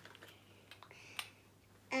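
A few faint, sharp plastic clicks and taps as small toy beans and their packaging are handled on a tabletop, the clearest click just over a second in.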